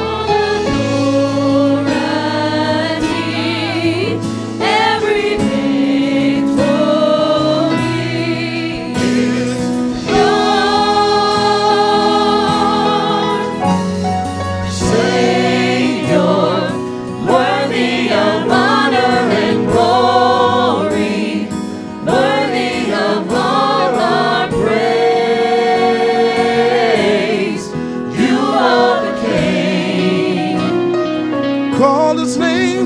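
Gospel choir singing with band accompaniment: a chorale of mixed voices on held, vibrato-rich notes over sustained low instrumental notes.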